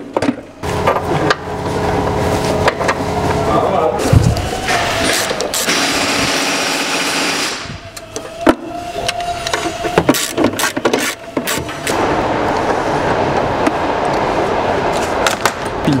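Plastic air-filter housing being handled and fitted in an engine bay, with scattered knocks and clicks of plastic on plastic. A loud steady hiss runs for about three seconds in the middle and cuts off suddenly.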